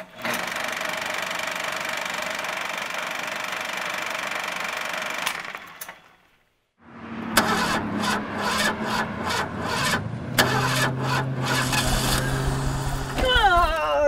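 A steady intro sound plays under an animated logo for about five seconds and stops. After a short silence, a car engine runs roughly with uneven knocks and sputters as the car breaks down.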